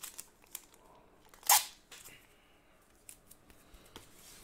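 Trading cards in plastic sleeves and top loaders being handled and gathered on a table: faint scattered clicks and rustles, with one sharp, much louder click about a second and a half in.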